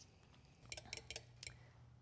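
Near silence, with a quick run of several faint, high ticks about a second in, from a lemon half being squeezed by hand over a glass measuring cup of cream.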